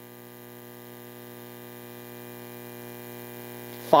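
Steady electrical hum, a stack of many even tones, slowly getting a little louder; a word of speech begins right at the end.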